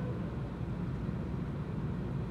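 Steady low room hum with faint hiss and no distinct event.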